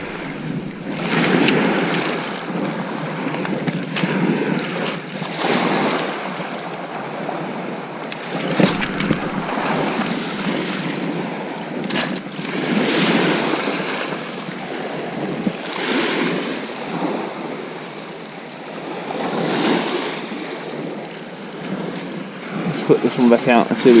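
Small waves washing onto a shingle beach, each surge swelling and drawing back about every three to four seconds, with some wind on the microphone.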